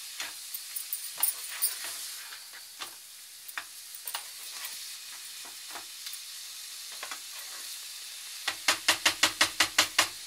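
Chicken masala sizzling in a non-stick frying pan as a spatula stirs it, with scattered scrapes and clicks of the spatula against the pan. Near the end, a quick run of about ten sharp taps.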